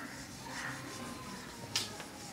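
A single sharp click near the end, over a faint steady background.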